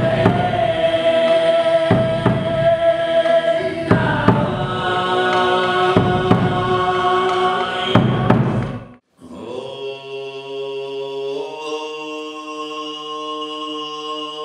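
Tuvan throat singing over a drum struck about every two seconds. About nine seconds in, the music cuts off briefly. An unaccompanied throat-sung drone follows, with a high, whistling overtone held above it; the drone steps up in pitch a couple of seconds later.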